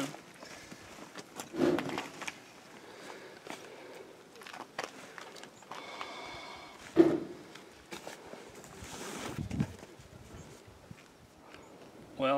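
Handling noises from fitting a double-action hand pump's hose and nozzle onto a float tube's inflation valve: scattered knocks, clicks and rustles with no steady pumping rhythm, the sharpest knock about seven seconds in. The pump lacks the proper adapter for the valve, so the fitting is being improvised.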